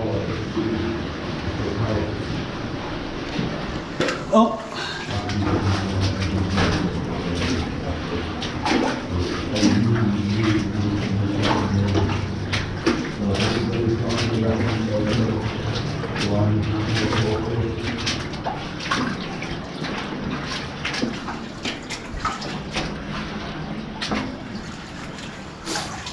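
Wellington boots wading through shallow water on a flooded mine tunnel floor: irregular splashing and sloshing steps. Low, indistinct voices run underneath.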